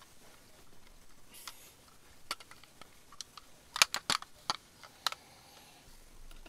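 Small hard plastic toys being handled, clicking and clacking against each other. A few scattered clicks come first, then a quick cluster of four or five loud clacks about four seconds in, and two more after.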